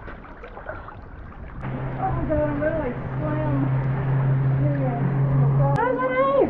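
Water sloshing around an action camera held at the surface. Then, from about a second and a half in, people's voices without clear words over a steady low hum.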